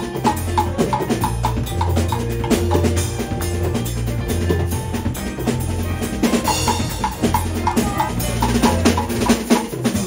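Live jazz band playing an instrumental passage: drum kit with bass drum and snare hits, a fretless electric bass carrying a low bass line, and piano.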